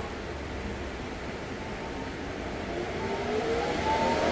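Icy Breeze cooler's built-in air-conditioner fan spinning up to its high setting. A low hum and hiss, then from about halfway a whine that rises steadily in pitch and grows louder.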